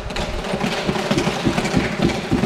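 Many members of Parliament thumping their wooden desks in approval: a dense, irregular rolling patter of low thumps.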